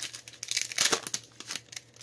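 Foil wrapper of a Pokémon trading-card booster pack being torn open and crinkled by hand, a run of sharp crackles in the first second or so, then quieter handling.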